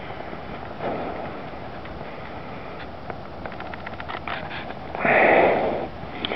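A person's breath close to the microphone: a short sniff or exhale about a second in and a louder one near the end, with a run of faint ticks in between.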